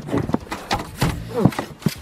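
Irregular muffled knocks of a horse's hooves stepping in snow, with a short exclaimed "Oh" about one and a half seconds in.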